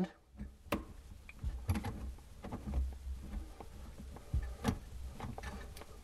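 Scattered small clicks and ticks as the nut of a flexible faucet supply line is threaded by hand onto a shut-off valve, with low handling rumble; two sharper clicks stand out, one early and one near the end.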